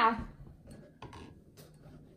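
A thin stirring stick tapping and clinking faintly against a drinking glass as the liquid in it is stirred, a few scattered light clicks.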